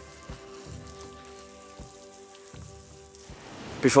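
Water from a hose spraying onto a bicycle and wet pavement, a faint steady hiss. It sits under soft background music of held chords with a low thump about every second and a half.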